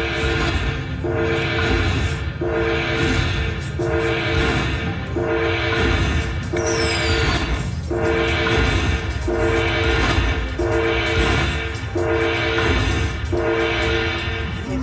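Dragon Link slot machine tallying its hold-and-spin bonus: a two-note, horn-like chime that restarts about every second and a half, around ten times, as the win meter counts up the orb values.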